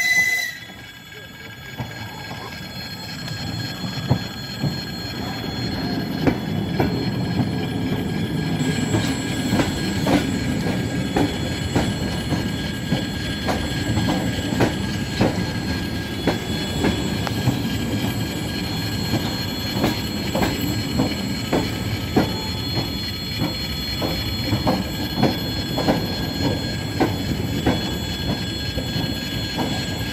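ED4M electric multiple unit running past a station platform. It gives a short high whistle at the very start. Then its rumble builds over the first few seconds and holds steady as the carriages go by, with regular clicks of the wheels over rail joints and a thin high squeal of wheels on rail.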